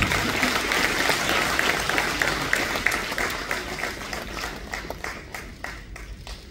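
Audience applauding. The clapping fades and thins to scattered single claps near the end.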